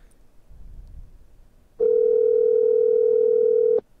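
Telephone ringback tone, the called line ringing, heard through the call audio: one steady two-second ring starting about a second and a half in and cutting off sharply.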